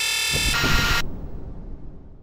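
Heavy rock music with distorted electric guitar that breaks off abruptly about a second in, leaving a fading ring-out.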